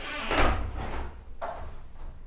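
A dull thump about half a second in, then a few lighter knocks spaced under a second apart as a person walks down an indoor staircase.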